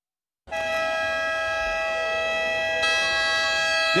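A loud, steady electronic tone made of several fixed pitches starts abruptly about half a second in and holds without wavering, with higher notes joining about three seconds in.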